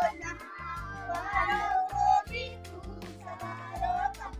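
A group of young children singing a Hindi rhyme together in high voices, holding long drawn-out notes.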